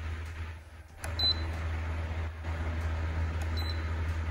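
Mistral 16-inch DC stand fan running at top speed 24 with a steady low rush of air. Its control panel gives two short high beeps as buttons are pressed, about a second in and near the end.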